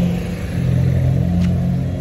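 Street traffic: a motor vehicle's engine running with a steady low hum.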